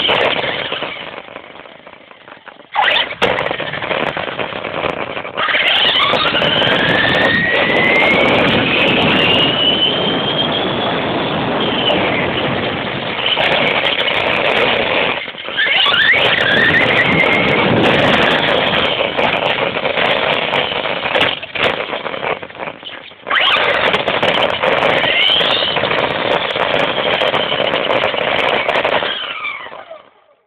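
Traxxas Stampede VXL RC truck running hard on a 3S LiPo: its brushless motor and gears whine over a rough hiss of tyre and road noise. The whine climbs in pitch each time it accelerates toward full throttle, drops briefly when the throttle is lifted a few times, and stops near the end. The sound is muffled and thin, recorded onboard by an old phone.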